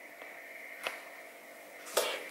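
Quiet room tone: a faint steady high-pitched hum with a few soft clicks, one a little under a second in and another just before the end.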